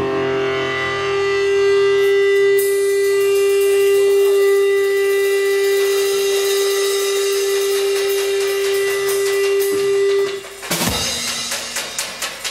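Electric guitar feedback: a single steady note held for about ten seconds, left ringing through the amplifier as a live song ends, then cut off abruptly. A short noisy crash follows near the end.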